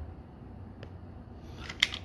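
Plastic parts of a transforming toy robot clicking as they are moved by hand: a faint click just under a second in and a sharper, louder click near the end.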